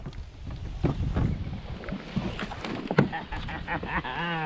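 A hooked fish splashing at the water's surface while being reeled in beside a small boat, with irregular small splashes and knocks over a low steady rush of water and wind.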